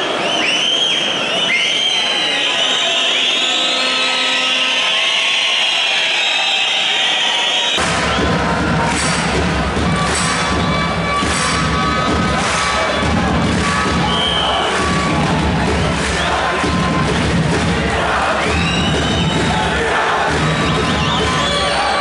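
Arena crowd shouting, cheering and whistling. About eight seconds in, the sound changes abruptly to a heavier crowd din with a steady beat running through it.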